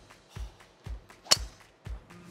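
A driver striking a golf ball off the tee: one sharp crack about 1.3 seconds in, over background music with a steady beat of about two thumps a second.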